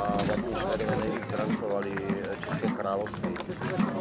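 A man's voice talking throughout, with outdoor crowd noise behind it.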